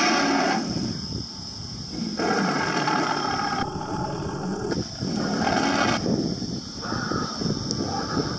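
Life-size animatronic Tyrannosaurus rex roaring: several long, rough roars with short quieter gaps between them.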